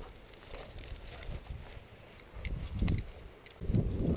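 Footsteps swishing through tall dry grass, with an uneven low wind rumble on the microphone and a few faint clicks.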